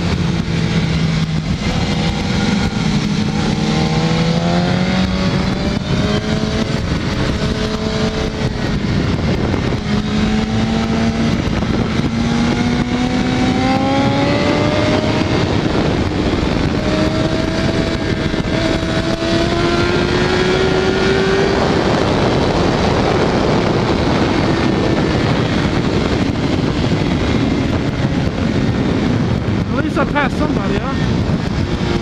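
BMW HP4's inline-four engine heard from an onboard camera under a constant rush of wind, its note climbing steadily for about ten seconds from the middle of the clip as the bike accelerates, then sinking into the wind noise near the end.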